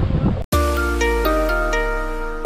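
Wind buffeting the microphone, cut off abruptly about half a second in by an edit. Background music then starts: a melody of short struck notes over a held bass note.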